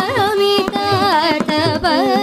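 Female Carnatic vocalist singing a kriti in rāga Māyāmāḷavagauḷa, her pitch swaying in quick oscillating ornaments, over a steady drone and mridangam strokes.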